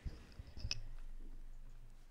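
A low thump and a few sharp clicks of a desk microphone being handled, followed by a steady low electrical hum.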